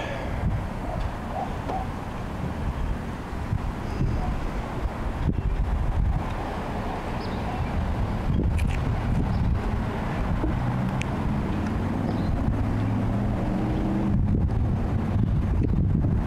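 Wind buffeting the camera microphone: a steady low rumble, with a faint low hum coming in during the second half.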